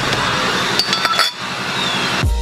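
Metal objects clinking together: several sharp metallic clinks with brief ringing, bunched about a second in.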